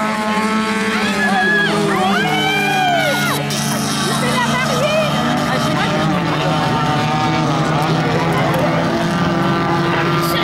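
Engines of several small hatchback race cars running hard on a dirt track, their revs rising and falling as they accelerate and lift off, over a steady lower engine drone.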